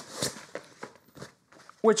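Fabric rustling and soft scuffs from a rolled-up, deflated air mat being handled, a few separate short noises at uneven intervals.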